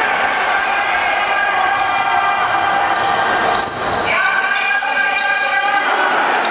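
Basketball bouncing on a hardwood court in a large echoing hall, under a steady droning tone held throughout. A second, higher tone joins about four seconds in and stops just before the end.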